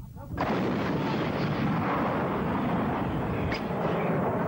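Towed field gun firing: a sudden loud report about half a second in, followed by heavy, steady rumbling noise.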